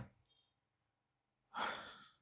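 Near silence, then about one and a half seconds in a person's single short, breathy sigh that fades out.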